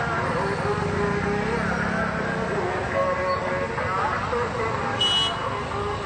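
Several people's voices talking over one another above a steady outdoor background din, with a short high-pitched toot about five seconds in.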